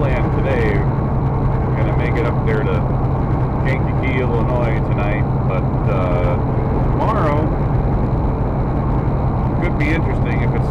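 Steady low drone of a semi truck's engine and road noise heard inside the moving cab. A man's voice is heard in short snatches over it.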